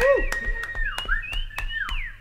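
A sustained pitched tone with overtones that wavers and dips in pitch several times, then rises and falls away near the end, over a string of sharp clicks.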